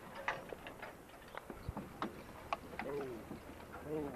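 Scattered light clicks and clanks from draft horses' harness and the hitched horse-drawn implements, with a short voice-like call about three-quarters of the way through.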